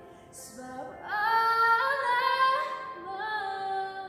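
A young female singer singing solo: an audible breath, then a phrase that slides up into loud held notes about a second in, easing to a softer held note near the end.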